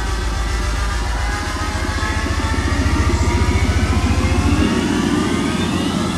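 Electronic dance music build-up: a synth sweep rising steadily in pitch over a fast, even pulsing beat, with the bass falling away right at the end.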